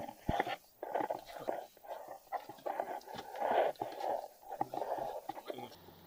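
Indistinct, unintelligible voices mixed with rustling and handling noise close to the microphone. Near the end this gives way to a faint steady low hum.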